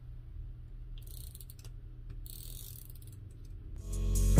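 Correction tape dispenser drawn across paper twice, each stroke a faint whirring scrape of under a second as the tape reel turns.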